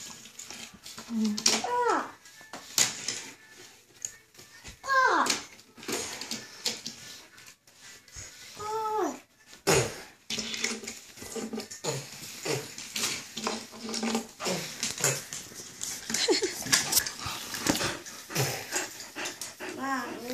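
Die-cast toy cars clicking and clattering as they are set down and moved on a tabletop beside a plastic playset. Three short whines fall in pitch, near the start, about five seconds in and about nine seconds in.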